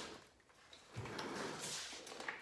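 Handling noise as a man moves about and handles parts by hand: a soft low thump about a second in, then faint rustling and light clicks.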